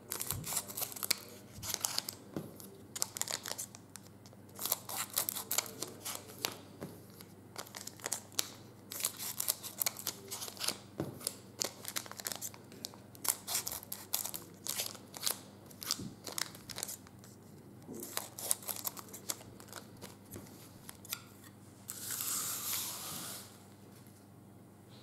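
Scissors snipping the sealed ends off foil trading-card packs one after another, the metallic foil wrappers crinkling as they are handled between cuts. A louder rustle comes near the end.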